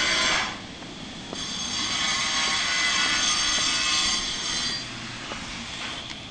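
A high-pitched power tool whining at a construction site, running in two spells: it cuts off just under half a second in, starts again about a second later and dies away near the end.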